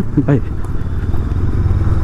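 Macbor Montana XR5's parallel-twin engine running at steady, even revs as the motorcycle rides along a dirt track, heard close up from the rider's position.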